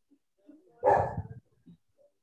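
A single sudden, loud burst about a second in, dying away within about half a second.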